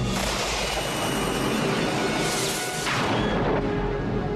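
Sound effect of a sonic boom breaking, a sudden loud blast that starts abruptly and swells again about two and a half seconds in before fading out, over a dramatic music score.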